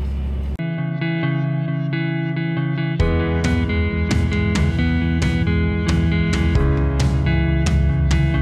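Background music: guitar, joined about three seconds in by a fuller band with a steady beat.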